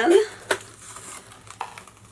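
Cardboard box flaps and insert being handled: one sharp tap about half a second in, then a few faint, lighter taps.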